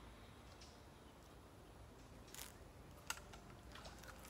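Near silence, broken by a brief rustle a little past halfway and a single sharp click about three seconds in.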